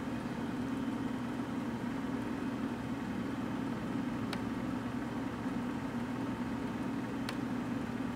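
A steady low hum throughout, with two short light clicks about four and seven seconds in: keys being pressed on a laptop keyboard.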